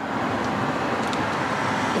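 Steady background road-traffic noise, an even rumble and hiss that holds constant with no distinct vehicle passing.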